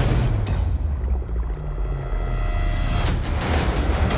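Action-trailer score: a sharp hit at the start and another about half a second in, over heavy, rumbling bass and held tones, with another hit near three seconds.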